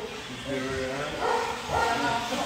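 A person's voice, speaking indistinctly in two short stretches.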